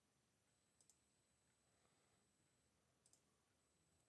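Near silence, broken by faint computer mouse clicks: a quick double click about a second in and another near the three-second mark, made while drawing a sketch line.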